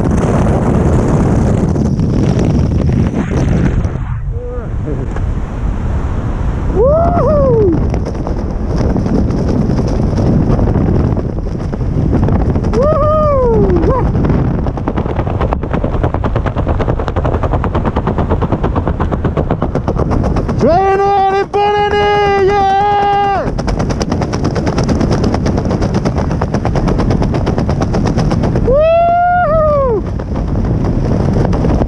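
Loud rushing wind over the microphone, with rapid flapping of parachute fabric and lines as the canopy deploys and then flies. A few short pitched calls rise and fall over it, and one held pitched tone lasts about two seconds past the middle.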